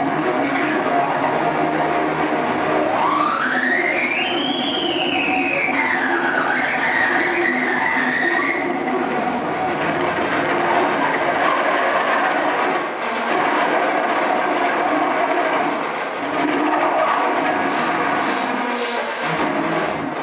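Harsh electronic noise music played loud over a PA: a dense, unbroken wall of distorted sound. About three seconds in, a pitched tone sweeps up and back down, then warbles until about halfway.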